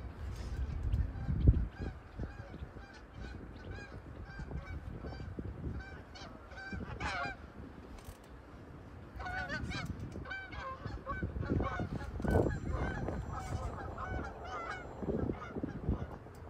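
Birds calling over and over in short pitched calls, with thicker bunches of calls around seven seconds and again from about nine seconds. A single loud thump comes about a second and a half in, over a low rumble at the start.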